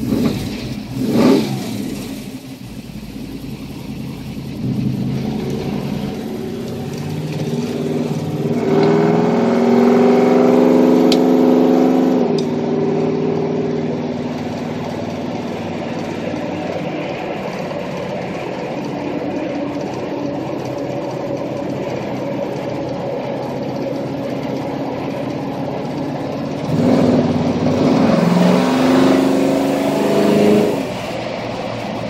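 383 cubic-inch V8 running through chrome headers and dual exhaust while the car is driven. There is a brief rev about a second in, a climb in pitch under acceleration about a third of the way through, steady cruising after that, and another acceleration near the end.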